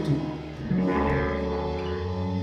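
A live band playing a slow instrumental passage: sustained low notes held under the music, with a brief dip about half a second in before they swell again.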